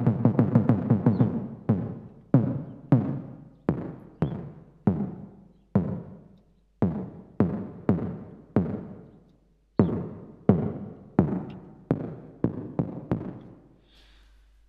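A synthesized percussive hit from NI Massive, the gritty, reverb-soaked top-end layer of a trap kick drum with tube drive and feedback, played over and over. There are about twenty hits, each a sharp attack dying away in a reverb tail, coming fast and overlapping at first, then about one every half second or so.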